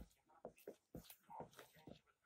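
Faint clicks and scrapes of a metal spoon stirring batter in a bowl, a few strokes a second.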